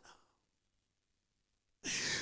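Near silence, then near the end a short, sharp intake of breath close to a handheld microphone.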